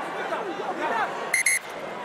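Two short, high-pitched blasts of a referee's whistle in quick succession, signalling the restart, over a low stadium crowd murmur.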